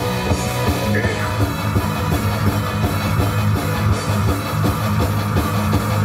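A metal band playing live, with electric guitar and a drum kit in a steady, full-band passage.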